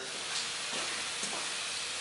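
Hand-pump pressure sprayer giving a steady hiss as it mists pre-soak onto a truck's lower body panel.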